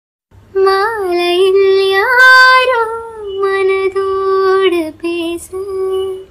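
A high-pitched solo voice singing long, held notes with small turns and slides in pitch, starting about half a second in and pausing briefly near the end; a song laid over the video as background.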